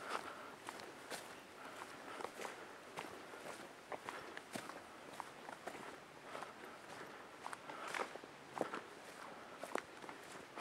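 Faint footsteps on a dirt forest trail at a walking pace, with short irregular crunches a little under a second apart.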